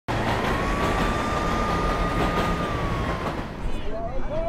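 Rumbling vehicle noise with a steady whine that rises slightly at the start, holds, and falls away after about three seconds.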